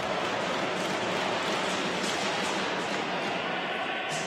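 Steady crowd noise in an ice hockey arena, an even rush with no single voice standing out.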